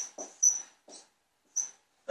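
Whiteboard marker writing in a few short strokes, with brief high-pitched squeaks of the felt tip on the board.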